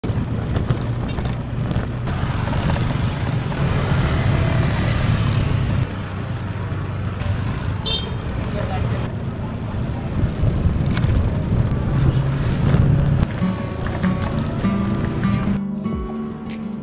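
Busy street ambience with motorbike and scooter traffic running and people's voices. Near the end, steady musical tones come in.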